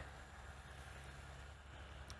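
Faint, steady low hum of distant machinery under a light hiss.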